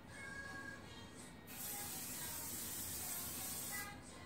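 Aerosol spray can spraying in one continuous burst of about two seconds, starting about a second and a half in and cutting off sharply, over background music with singing.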